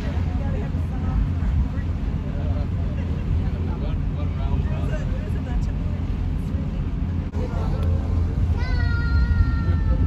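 Boat engine idling with a steady low rumble, under faint voices. Near the end a high, drawn-out cry rises over it, held about two seconds and falling slightly in pitch.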